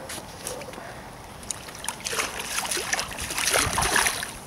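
Hooked carp splashing and thrashing at the water's surface close in, the splashes coming thick and irregular in the second half.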